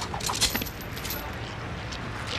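Night street ambience with a steady low hum, with a few light metallic clicks in the first half second.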